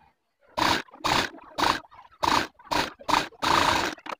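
Cotton fabric rustling as it is handled and smoothed close to the microphone, in about seven short, irregular bursts starting about half a second in.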